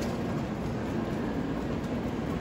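Steady, even rumbling ambience of a Shinkansen platform beside a standing bullet train.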